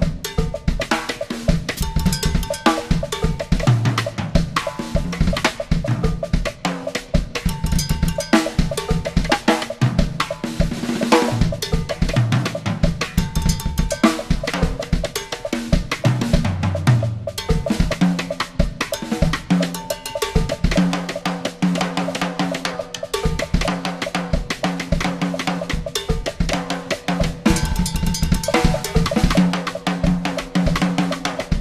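Yamaha drum kit with Zildjian cymbals played solo with sticks: fast, dense strokes across toms, snare, bass drum and cymbals, with repeated sharp clicks on a mounted red percussion block.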